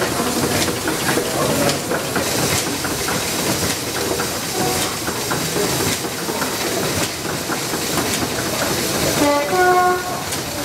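Small vertical single-cylinder stationary engines running together, a steady mechanical clatter of rapid clicks with steam hiss. A short pitched sound cuts in just before the end.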